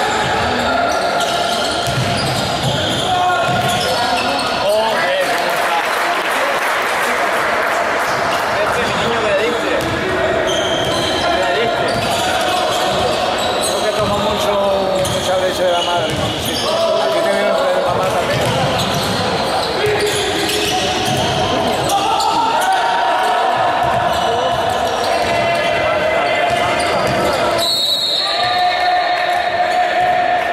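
Live sound of an indoor basketball game: a basketball bouncing on a hardwood court with players' voices, in a large echoing sports hall.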